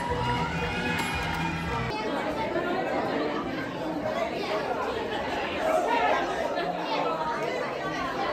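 Stage music with the audience for about the first two seconds, then a cut to the chatter of a crowd, many people talking at once.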